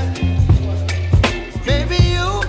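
Background music: a song with a strong, steady bass line and a regular drum beat.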